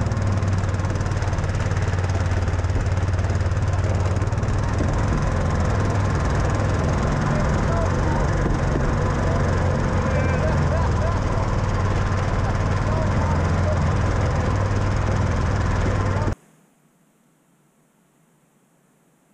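Argo amphibious ATV engine running at a steady pace under load, with faint voices over it. The engine sound cuts off suddenly near the end, leaving near silence.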